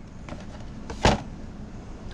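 A single short knock or click about a second in, over low room noise.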